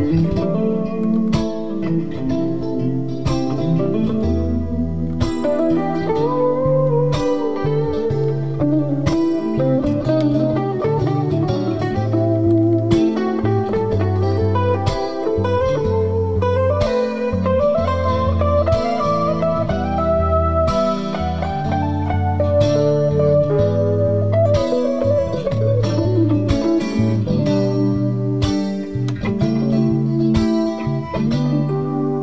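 Fender Stratocaster electric guitar playing a bluesy lead solo live over a recorded backing track of a single rhythm guitar. The lead line climbs and falls with bent, gliding notes over the steady chords underneath.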